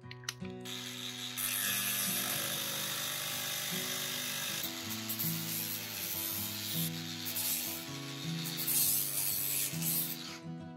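A cordless disc grinder's abrasive wheel cutting through a steel threaded rod, giving a steady grinding hiss from about a second in.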